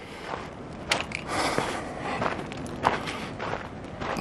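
Hiker's footsteps on a stony dirt trail, at a walking pace, with a few sharper clicks of stones underfoot.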